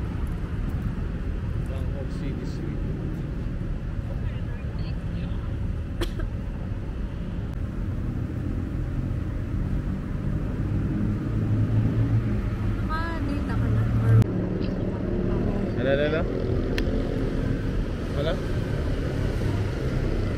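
Steady low rumble of city road traffic, with a voice saying "hello" near the end.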